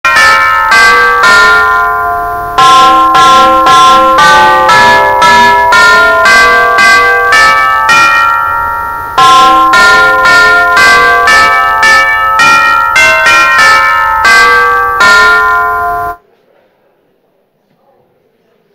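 Tuned bells playing a melody, one struck note after another, each note ringing on under the next, in three phrases. The bells cut off suddenly about sixteen seconds in.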